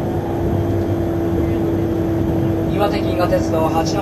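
Cabin running noise of an E3-series Akita Shinkansen Komachi train under way: a steady low rumble with a constant droning hum. A station announcement voice comes back in near the end.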